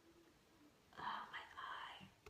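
A near-silent pause, then a woman whispering softly for about a second, starting about a second in.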